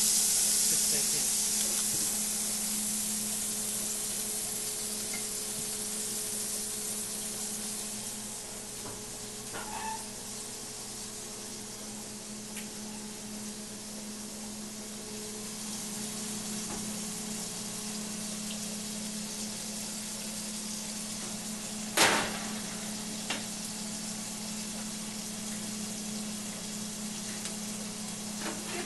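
A giant ground-beef patty sizzling on an electric griddle, loudest in the first few seconds and then settling to a softer sizzle, over a steady low hum. A single sharp knock stands out about 22 seconds in.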